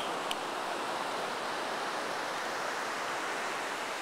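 Steady, even rush of ocean surf on a beach, a constant hiss with no distinct wave crashes.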